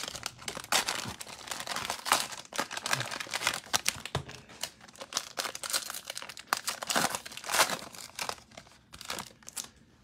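Cellophane wrapper of a Mosaic football trading-card cello pack crinkling as it is torn open by hand: a run of irregular crackles that thins out toward the end.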